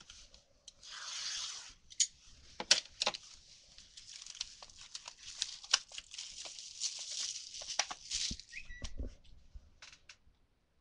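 Plastic shrink wrap being slit and torn off a sealed box of trading cards. A hissing rip comes about a second in, followed by several seconds of crinkling, crackling plastic with sharp snaps.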